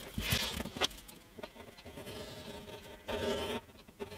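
A fly buzzing faintly on and off, louder for a moment about three seconds in, with soft rustling and light taps of hands handling a paper template on a wooden guitar top.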